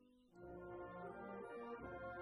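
Military concert band playing: a soft held chord dies away, then about a third of a second in the full band comes in loudly with brass and carries on.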